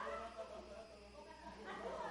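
Indistinct voices talking, with no words clear enough to make out, and a louder stretch of voice near the end.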